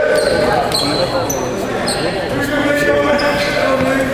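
Sneakers squeaking on a hardwood gym floor about five times, short high chirps, over the indistinct chatter of players and spectators echoing in a large gymnasium.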